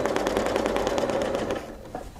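Domestic sewing machine stitching at a fast, even rate during free-motion ruler quilting, then stopping about three-quarters of the way through.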